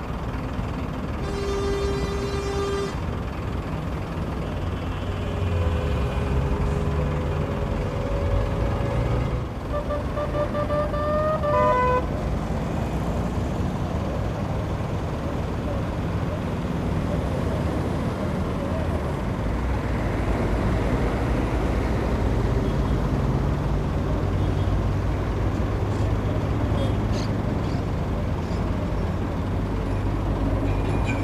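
Steady road noise of slow traffic passing on a multi-lane avenue, with car horns honking: one long honk about a second in, and more honks about ten to twelve seconds in.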